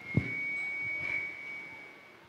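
A steady high-pitched ringing tone from the church sound system, microphone feedback, holding one pitch and fading out near the end. A soft low thump, handling noise on the handheld microphone, comes just after the start.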